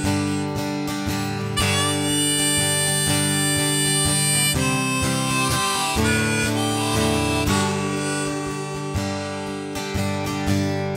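Harmonica in a neck rack playing a wailing melody of held, changing notes over a strummed acoustic guitar: an instrumental break in an americana folk song.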